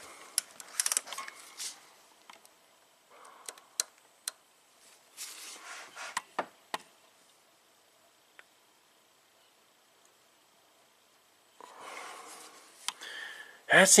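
Soft metallic clicks and scrapes of hand tools on an engine as it is turned over slowly by hand at the crank bolt, with a few seconds of quiet in the middle.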